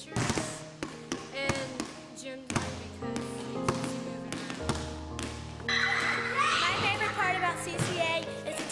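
A basketball bouncing on a gym floor, repeated sharp thuds over background music. A louder, busier burst of sound comes in about six seconds in.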